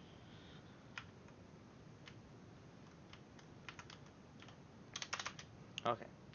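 Computer keyboard being typed on: scattered single keystrokes about a second apart, then a quick run of several keys near the end.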